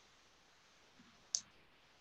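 Near silence broken by a single short click a little past the middle: a computer mouse button being clicked.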